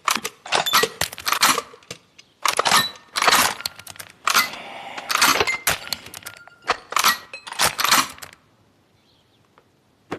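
Rapid metallic clicks, rattles and clinks of a scoped bolt-action rifle being worked and handled, in repeated clusters with brief ringing, stopping about eight seconds in.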